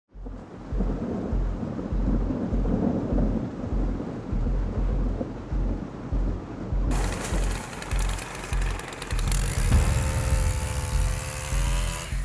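Storm sound effects, rumbling thunder and rain, under a music bed with a pulsing low beat. About seven seconds in the sound turns brighter, and a few seconds later held tones come in.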